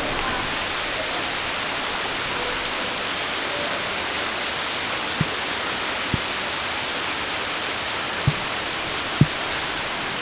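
Steady, even rush of falling water: small cascades spilling into a pool, mixed with rain falling on the water. A few faint soft knocks come in the second half.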